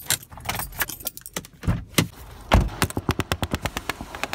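Rattling and clicking as loose objects are handled inside a car, with a few louder knocks. About three seconds in, a rapid, even run of clicks begins, several a second.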